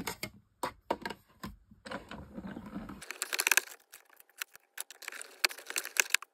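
White card stock being handled and a die-cut log shape worked free of the cutting die: paper rustling and crinkling with irregular small clicks and taps.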